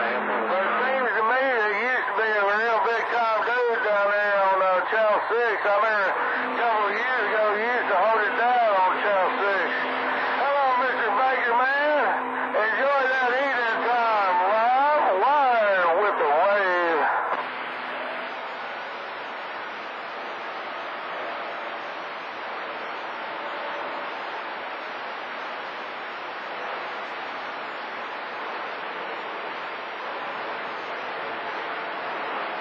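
CB radio receiving channel 28 skip: a garbled, voice-like transmission whose pitch warbles up and down several times a second, over a steady low hum, cuts off about seventeen seconds in, leaving steady static hiss.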